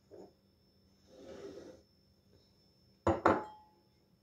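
Paring knife scraping seeds and juice out of fresh tomato quarters, a soft wet scrape, followed near the end by two sharp knocks in quick succession.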